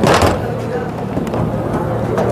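A short knock at the start as a plastic EVM ballot unit is set down on a wooden table, over steady background chatter and a low hum in a large hall.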